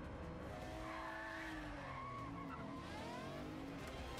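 Car-chase sound from a film: a car engine revving hard with tyres squealing, heard as several rising and falling pitched tones over road noise, played quietly.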